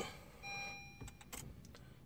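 A single electronic beep from a Honda Jazz's dashboard as the push-button ignition is switched to on without the brake pressed, so the engine does not crank. A couple of faint clicks follow as the instrument panel lights up for its diagnostics.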